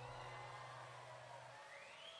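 The last chord of a live acoustic ensemble piece ringing out and fading to near silence, with a low held note dying away about one and a half seconds in.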